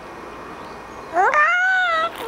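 Baby squealing: one high-pitched vocal call that rises in pitch and then holds, about a second long, starting about a second in.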